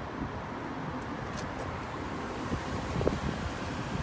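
Steady outdoor background noise: a low, fluctuating rumble under an even hiss, with no distinct event.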